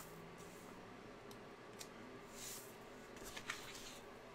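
Faint paper handling: a planner sheet slid and shifted across a wooden tabletop, with a soft swish about halfway through and a few light clicks and taps near the end.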